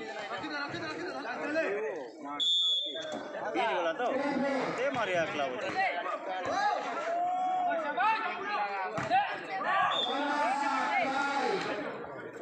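Many voices of players and spectators shouting and talking over each other during a volleyball rally. A short high whistle, typical of a referee's whistle, sounds about two and a half seconds in.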